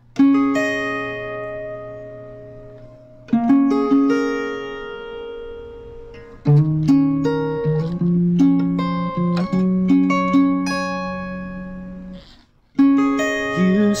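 Acoustic guitar with a capo, fingerpicked: plucked notes and arpeggiated chords left to ring. It opens with slow patterns that decay for about three seconds each, moves to quicker single notes about halfway through, stops briefly near the end and starts again.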